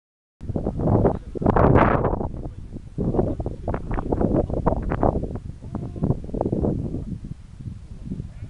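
Wind buffeting a phone microphone in irregular gusts, loudest about one to two seconds in.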